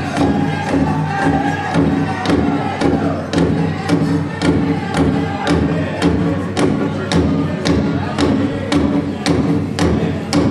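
Powwow drum group: a big drum struck in a steady, fast beat, with high-pitched group singing that is strongest in the first few seconds.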